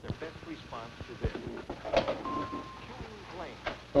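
Faint, low voices murmuring, with a few soft knocks and a brief steady tone a little past two seconds in.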